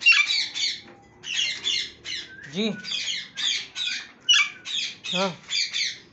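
Parrots squawking harshly in quick repeated bursts, several short screeches at a time, over and over.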